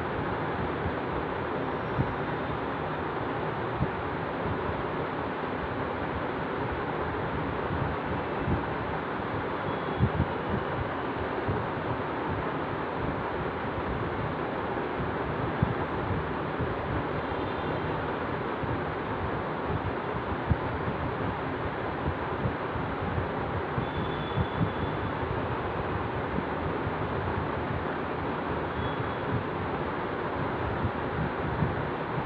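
Steady rushing background noise with scattered faint clicks and no speech.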